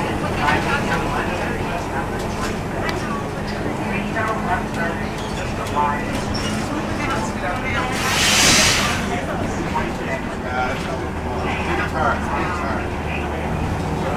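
Interior of an articulated city bus on the move: a steady engine and road drone, with a burst of hiss lasting about a second just past the middle.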